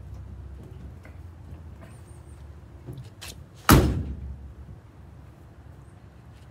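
The steel cab door of a 1948 Ford F1 pickup bangs once, loud and sharp, about two thirds of the way in, with a short ringing decay. A few faint knocks come just before it.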